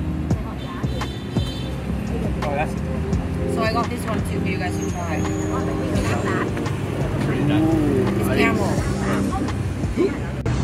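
Road traffic with voices and music mixed together, the music's held tones running under it all and voices coming in from about the middle on.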